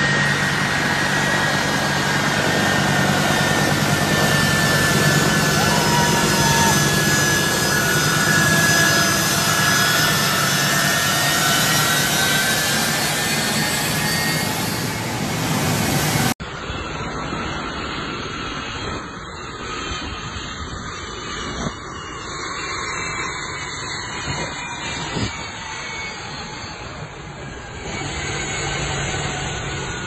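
Turbofan engines of a U.S. Air Force C-17 Globemaster III taxiing close by: a loud, steady jet roar with a whine that slowly rises and falls in pitch. About sixteen seconds in, the sound drops suddenly to a quieter engine whine with a few sharp clicks.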